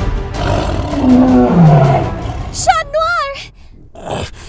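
A voice-acted monster-cat roar, rough and falling in pitch over about two seconds, followed by a short wavering high cry.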